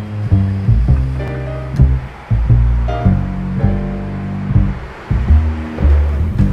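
Instrumental background music with a deep bass line of repeated low notes that change pitch every second or so, over a soft wash of higher sound.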